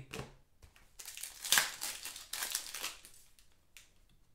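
Foil wrapper of a Prizm Draft Picks football card pack crinkling as it is torn open and pulled off the cards. The crackling starts about a second in and lasts about two seconds, then gives way to fainter card handling.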